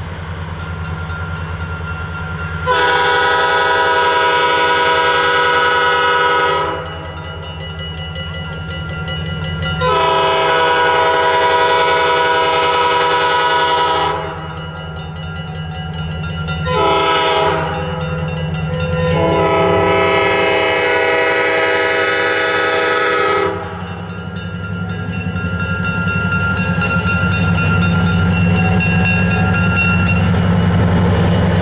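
Diesel locomotive air horn, from ex-Maine Central GP7 #573, sounding the grade-crossing signal: long, long, short, long. Under it runs the low rumble of the diesel engine, growing louder as the locomotive nears, with a crossing bell ringing.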